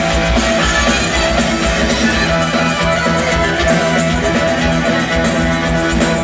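Live rock band playing an instrumental passage at full volume: electric guitar and drum kit, with violin.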